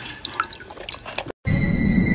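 Water splashing and dripping in a plastic bowl as a dog works its muzzle in it, a quick irregular series of small splashes. About 1.3 s in it cuts off abruptly, and a steady low rushing drone with high held tones starts.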